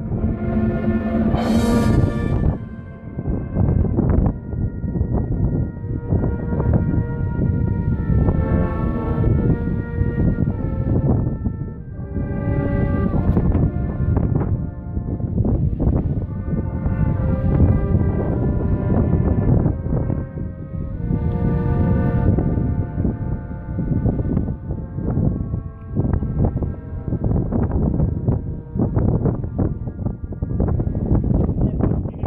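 Male voices chanting Byzantine memorial hymns of the Greek Orthodox service, in slow held notes that step from pitch to pitch, with wind rumbling on the microphone.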